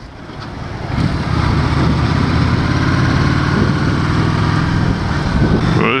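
Honda Shadow 750's V-twin engine running under way, getting louder over the first second and then pulling steadily, with wind rush on the microphone.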